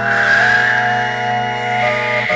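Sustained organ-like keyboard chords of an animated film score, with a hissing, whooshing sound effect over them that begins at the start and rises a little in pitch.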